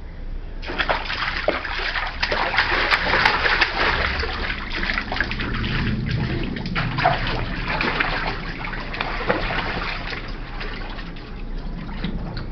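Water splashing and sloshing in a small inflatable paddling pool as a man thrashes about in it with a toddler. It starts abruptly under a second in as many quick, irregular splashes, and eases off near the end.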